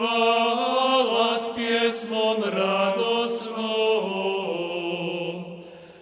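Small men's schola singing Gregorian chant in unison, in Croatian: one sustained phrase moving stepwise in pitch, trailing off near the end.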